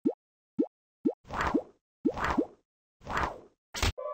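Cartoon sound effects: three short rising-pitch plops about half a second apart, then three longer swooshes, each with a rising pop inside, and a short sharp hit just before the end.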